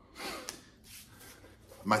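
A man's sharp, gasp-like breath, a rush of air without voice, with a small click about half a second in, then a fainter breath about a second in.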